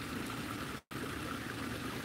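Steady trickling of water from a garden pond's waterfall filter running over rocks back into the pond. The sound cuts out completely for a moment a little before a second in.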